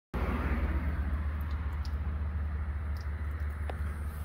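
Steady low rumble with a light hiss, wind buffeting the microphone outdoors.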